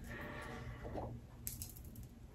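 Faint handling sounds as a pearl bag charm is drawn from a small pouch and turned in the fingers: a soft rustle, then a few light clicks of the pearls and metal.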